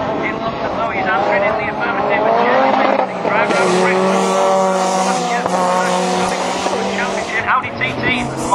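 Rallycross car engines revving hard as the cars race round the circuit, their notes rising and falling with throttle and gear changes, several overlapping. The sound is fuller and brighter from about three and a half to seven and a half seconds in.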